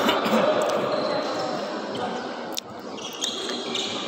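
A volleyball being struck several times during a rally, with sharp slaps over the steady noise of the hall; the clearest hit comes about two and a half seconds in.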